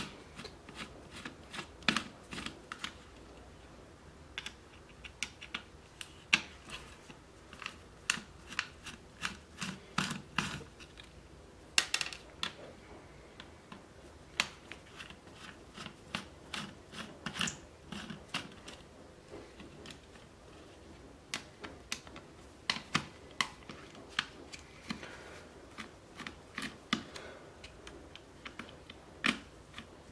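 A small hand screwdriver working screws out of a plastic radio casing and circuit board: irregular sharp clicks and ticks of metal on screw heads and plastic.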